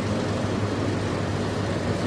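Steady low hum with an even hiss over it: background room noise with no distinct events.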